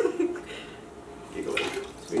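Half a lemon squeezed in a hand-held citrus press, juice trickling and dripping into a blender jar.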